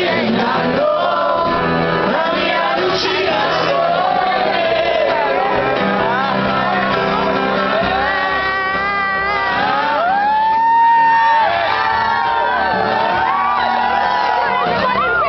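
Live song: a male singer's voice over a strummed acoustic guitar through a concert sound system, with audience voices and shouts mixed in. A long held vocal note about ten seconds in is the loudest moment.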